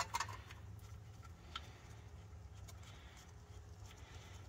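Quiet room tone: a faint steady low hum with a few faint small ticks, while the drain plug is threaded in by hand.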